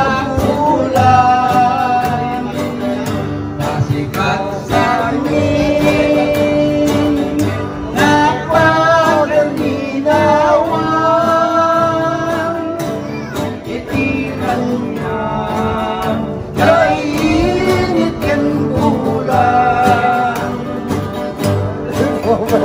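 A small string band playing live: men singing into microphones in long held phrases with vibrato, over strummed and plucked guitars.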